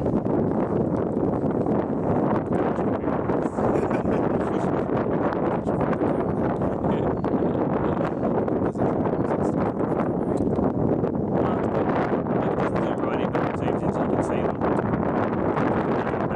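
Steady wind buffeting the microphone.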